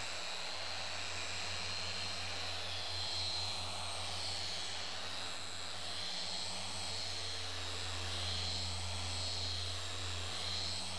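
Dual-action polisher running steadily with a foam pad on windshield glass, machine-polishing off water spots; its motor's high whine wavers slightly in pitch as the pad is worked over the glass.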